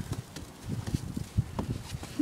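Footsteps going down snow-covered stairs: a handful of irregular soft thuds as feet tread into the snow on the steps.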